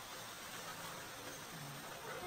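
Faint steady hiss of background room noise, with a couple of faint low murmurs.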